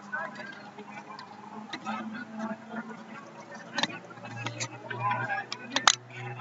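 Faint voices of people talking in the background, with a sharp click a little before four seconds and a louder one just before the end. A low steady hum comes in after about four seconds.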